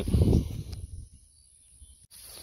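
Steady high-pitched chirring of insects in the grass, with a brief low rumble in the first half second.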